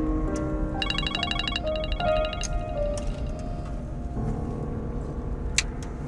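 Background music of sustained notes. About a second in, a rapid electronic trill like a mobile phone ringtone sounds for about a second. A sharp click comes near the end.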